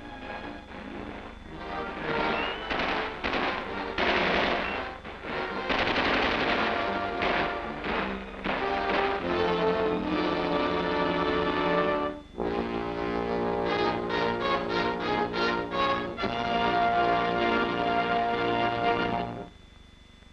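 Battle sound effects of machine-gun and rifle fire mixed with a film score for the first several seconds. The music then carries on alone as the closing theme, with held chords that end sharply just before the end.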